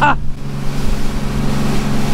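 Outboard motor running steadily at trolling speed: a constant low drone, with water rushing along the hull and wind.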